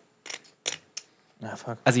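Clay poker chips clicking against each other in a quick run of short clicks, as chips are handled at the table.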